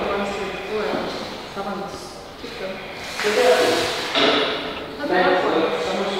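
Men's voices with drawn-out, wordless calls or strained groans during a timed dead hang from a pull-up bar; no clear words are heard.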